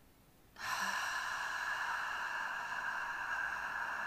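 A woman's long, steady exhalation blown out through the mouth as a hiss, starting about half a second in: the slow, controlled out-breath of a diaphragm-strengthening breathing exercise.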